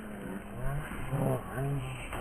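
People's voices calling out and talking in short phrases.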